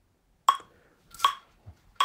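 Software metronome in the Airstep Play practice app, set to a slow tempo, ticking twice about three quarters of a second apart with short, bright clicks.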